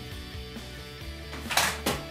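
A shower squeegee swiped once, briefly, across a wet shower wall near the end.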